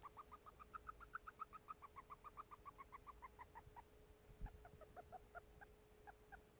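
Syrian hamster giving a rapid run of faint, high squeaks, about eight a second, as she sniffs; the squeaks thin out and drop lower near the end. It is an unusual sniffing squeak for which the owner found no cause: she was not trapped or injured and breathed normally.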